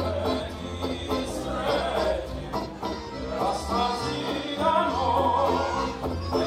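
Live acoustic folk band playing, with a voice singing; a wavering melody line grows louder over the last couple of seconds.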